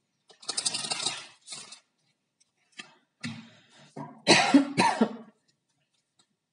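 A woman coughing several times in sharp, loud bursts, the strongest about four to five seconds in. About half a second in, a brief papery rustle as a card is drawn and laid down.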